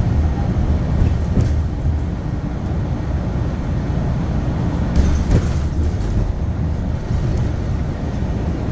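Cabin noise inside a New Flyer XDE60 diesel-electric hybrid articulated bus under way: a steady low rumble of drivetrain and road noise, with a few brief knocks, the loudest about five seconds in.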